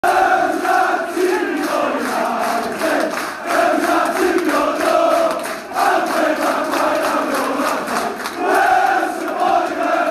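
A big football crowd in a stadium singing a chant together, the massed voices going in sung lines with short breaks between phrases.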